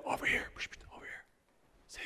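Quiet, indistinct talking, partly whispered, during the first second, then a brief pause and a short hissing 's'-like sound near the end.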